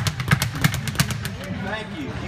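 Speed bag being punched in rapid combinations: the leather bag rebounds off the underside of its round wooden platform in a quick, rattling run of sharp knocks that stops about a second in.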